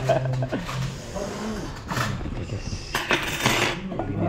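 Tableware on a restaurant table: dishes and metal cutlery clinking, with a sharp clink about two seconds in and a short clattering rush a second later.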